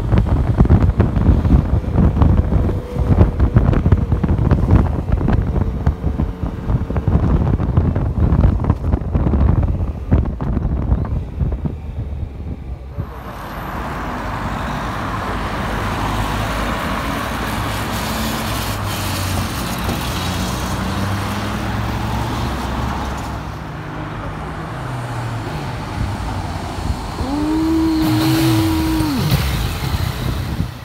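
Wind buffeting the microphone on a moving motorcycle, then street traffic with cars going by. Near the end a motorcycle engine revs up, holds and drops back as the bike pulls away.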